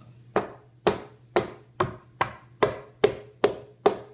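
A kitchen utensil striking a stiff pizza crust against a wooden countertop: about nine sharp, evenly spaced knocks, roughly two a second, cracking the crust.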